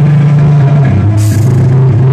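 Live folk metal band playing loudly: heavily distorted guitars and bass holding low notes over drums, with a cymbal crash about a second in.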